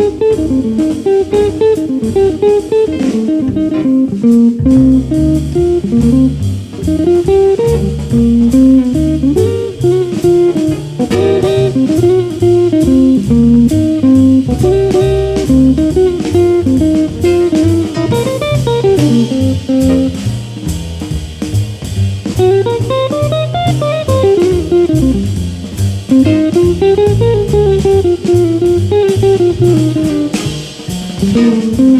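Electric guitar playing a jazz solo of quick single-note runs that climb and fall, over a drum kit with ride cymbal and a bass line underneath.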